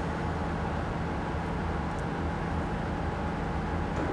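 Steady, even din of yarn-spinning and plying machinery in a textile mill, a continuous noise with a low hum underneath.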